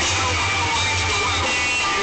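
A live rock band playing loudly through a stage PA, with electric guitars over a heavy, steady low end, heard from within the crowd.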